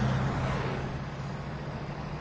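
Road traffic: a passing vehicle's engine and tyre noise with a steady low hum, loudest at the start and fading.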